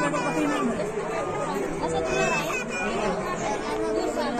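Chatter of several people talking over one another, adults' and children's voices mixed together.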